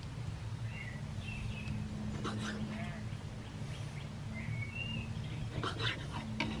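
Birds chirping now and then over steady low background noise, with a few knife taps on a wooden chopping board as a tomato is sliced, near the middle and again near the end.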